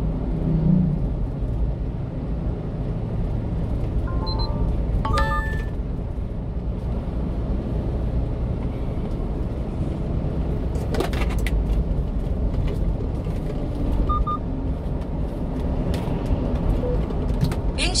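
Steady low rumble of a one-ton refrigerated box truck's engine and tyres, heard from inside the cab while driving at road speed. A few short, faint beeps come about four to five seconds in.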